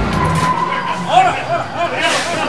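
Men's voices shouting short calls in quick succession, about four a second, during a police raid; a brief steady whistle-like tone comes just before the shouting starts.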